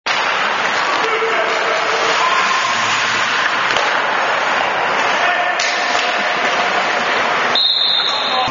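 Ice hockey practice in an echoing rink: skates scraping on the ice, with sticks and a puck clacking and players' voices in the background. A short high steady tone sounds near the end.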